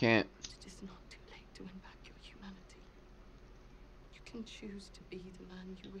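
Quiet speech and whispering, with a man's voice of the episode's dialogue near the end; a short loud vocal sound right at the start.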